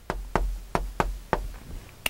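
Chalk striking and tapping on a chalkboard while handwriting a short Korean word: about half a dozen sharp taps, unevenly spaced, one for each stroke.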